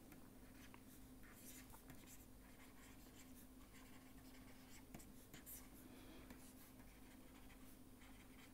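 Near silence: faint scratches and taps of a stylus writing on a pen tablet, over a low steady hum.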